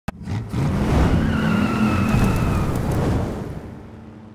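Car engine revving hard under a tyre squeal in an intro sound effect, loud from about half a second in and fading out toward the end.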